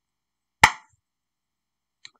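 A single sharp tap about half a second in, with a much fainter tick near the end, against otherwise dead silence.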